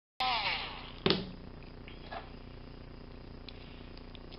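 Small rotary tool spinning down after grinding a key blank, its whine falling in pitch. About a second in comes a single sharp knock, followed by a few faint small clicks of a key being handled at a lock plug.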